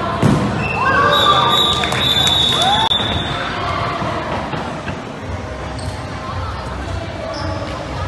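A dodgeball hits the court hard about a quarter second in. Players and spectators then shout and cheer for a couple of seconds, with a long high shrill note running through the shouting, before it settles into steady hall hubbub.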